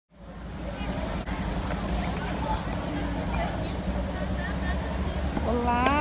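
City street ambience: a steady low traffic rumble with scattered voices of passers-by. Near the end a woman starts speaking close by.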